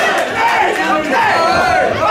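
Crowd of spectators shouting at ringside during a Muay Thai bout, many voices yelling over one another.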